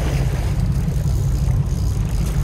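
A fishing boat's engine running with a steady low rumble, while a trolling reel's drag gives out line with a grinding "jiri-jiri" buzz as a hooked fish pulls against it.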